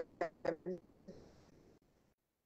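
A quick run of short, nasal vocal sounds, about four a second, ending just under a second in, followed by a faint hiss.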